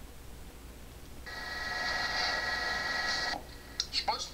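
A steady electronic tone made of several pitches sounds for about two seconds. It swells in about a second in and cuts off suddenly, over a constant low hum.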